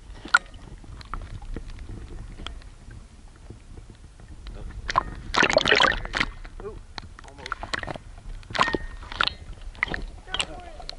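Muffled water noise and scattered knocks picked up by an action camera underwater, with a burst of sloshing and splashing a little past halfway as the camera comes up through the water's surface.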